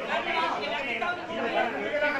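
Several people talking over one another in a heated argument, voices raised and overlapping.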